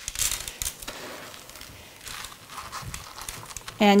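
Soft crinkly rustling in a few short bursts as hands handle candy sequins and press them onto the side of a cake.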